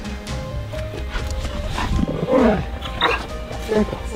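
Background music with steady tones, then from about two seconds in a dog vocalizing over it: several short drawn-out calls, each sliding down in pitch.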